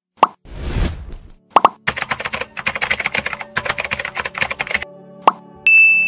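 Animated logo outro sound effects over a short music bed: sharp pops, a whoosh, a fast run of ticks for about three seconds, then a bright beep near the end.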